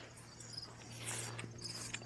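Crickets chirping faintly in short high-pitched trills, with a brief soft rustle about a second in.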